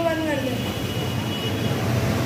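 A voice drawn out and trailing off in the first half second, over a steady low background rumble that carries on through the rest.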